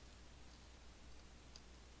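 Near silence: quiet room tone with a faint low hum, and one faint click about one and a half seconds in.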